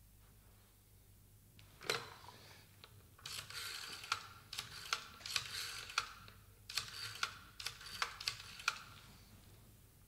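Telephone being dialled: a single knock about two seconds in, then several runs of rapid dial clicks as the dial is turned and spins back, number after number.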